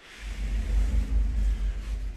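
Sliding wardrobe door rolling open along its metal floor track: a low, steady rumble that starts a moment in.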